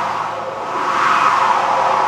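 Stage synthesizer keyboard playing a noise-sweep effect: a whoosh of noise that swells to its loudest about a second in and then eases off.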